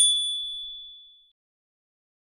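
A single bright notification-bell 'ding' sound effect, struck once and ringing out high and clear before fading away over about a second.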